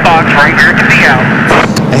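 Steady low drone of NASCAR Busch Series stock cars' V8 engines running at slow caution and pit-road speed, under a broadcast commentator's voice.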